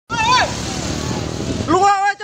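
A short shout at the very start, then a small motorcycle engine running under a steady hiss of noise, then loud urgent shouting near the end.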